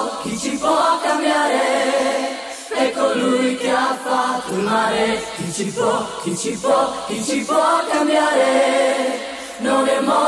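Several voices singing together a cappella, choir-style, in phrases that break every two to three seconds.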